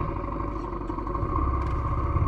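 Motorcycle engine running steadily while the bike stands still, growing a little louder about two-thirds of the way through.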